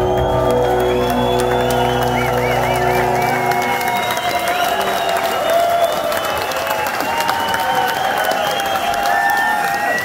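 Rock band's final sustained chord ringing out through the club PA, cutting off about three and a half seconds in, then the crowd cheering and applauding.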